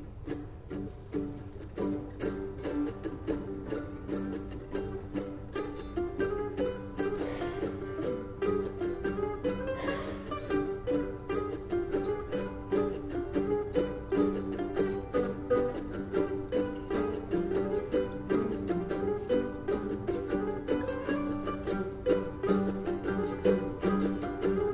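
Mandolin orchestra playing a fast Bulgarian ruchenitsa in a meter of seven, styled after a Balkan brass band, with dense, quickly picked notes. It grows a little louder over the first few seconds.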